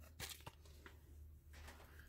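Near silence: room tone with a low steady hum and a few faint, soft clicks in the first second.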